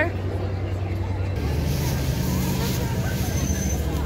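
Diesel commuter train moving along the platform: a steady low rumble of engine and wheels that grows louder about a second and a half in, with a brief thin high squeal near the end. Crowd voices chatter underneath.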